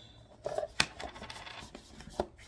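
Paper envelopes sliding and rustling inside a cardboard case as it is tipped and handled, with one sharp knock a little under a second in.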